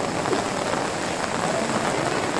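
Steady heavy rain falling, mixed with floodwater rushing through the street, as one even, constant hiss.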